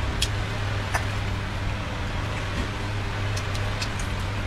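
Close-miked eating sounds: a few short, sharp chewing clicks over a steady low hum.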